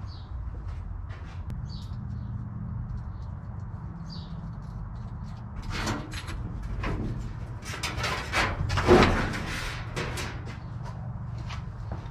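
Scattered clicks and metallic clunks of battery terminal clamps being worked loose and a car battery being lifted out, busiest in the second half with the loudest knock about nine seconds in, over a steady low hum.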